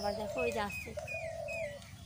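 A bird calling in a run of four short, high, falling chirps over a steady drone.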